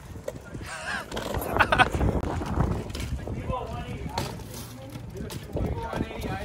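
Several people's voices calling out, too unclear to make out as words, over a steady low rumble.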